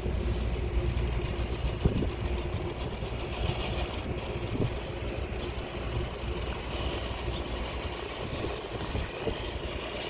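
Traxxas TRX-4 RC crawler climbing over rocks: its electric motor and geartrain whine, rising and falling with the throttle, with a couple of sharp knocks of tyres or chassis on the stones about two and four and a half seconds in.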